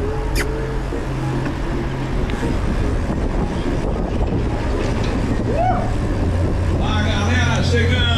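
Steady low rumble of wind and tyres picked up by a camera on a moving mountain bike. A single short voice call sounds a little before six seconds, and a mix of several voices starts about a second before the end.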